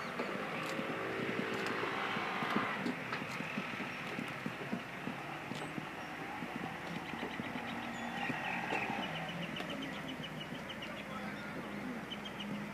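Fishing-harbour ambience: a steady motor-like rumble and hiss with scattered clicks, and a rapid run of high ticks about seven seconds in.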